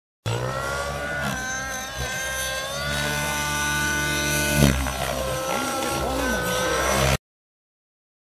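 GAUI NX7 radio-controlled helicopter in 3D flight: a loud, many-toned whine from its motor and rotor head that slides up and down in pitch as it manoeuvres, with a short louder swell about four and a half seconds in. The sound starts just after the beginning and cuts off suddenly about a second before the end.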